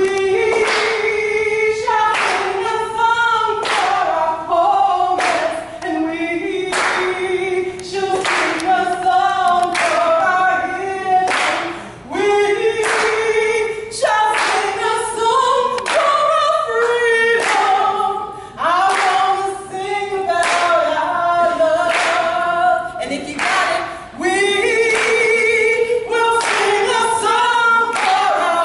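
A group of people singing together a cappella, with hand claps keeping the beat about once a second.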